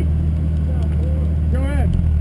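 Buick LeSabre's engine running with a steady low drone, heard from inside the car's cabin. A voice sounds briefly twice over it.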